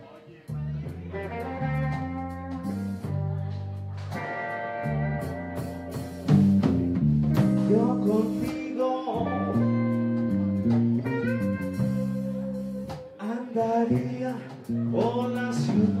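A live band playing a song: electric bass, electric guitar and drums, with a lead melody carried over them at the vocal microphone. The music dips briefly right at the start, then runs on.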